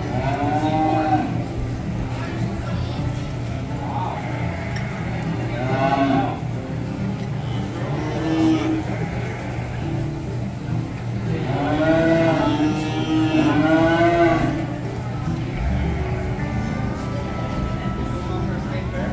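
Cattle mooing several times over a steady low hum. Short calls come about half a second in, around six seconds and around eight and a half seconds, then a longer run of two or three calls from about eleven and a half to fourteen and a half seconds.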